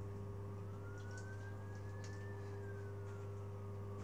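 Steady low background hum, with a faint high tone that rises slowly for about two seconds and falls back, like a distant siren's wail.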